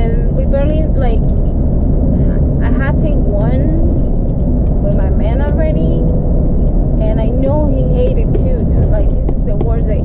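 Steady low rumble of road and engine noise inside a moving car's cabin, with a person's voice talking over it.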